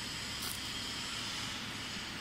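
Steady background hiss and rumble in a factory workshop, with no distinct mechanical events.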